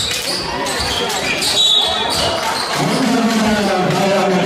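A basketball bouncing on a sports-hall floor during play, with short high squeaks of sneakers and players' and spectators' voices in a large echoing hall; the voices grow louder near the end.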